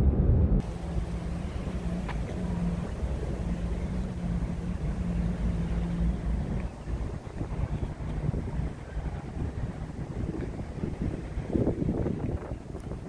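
Wind blowing on a phone's microphone, a rumbling haze, with a faint steady low hum that fades out about six or seven seconds in.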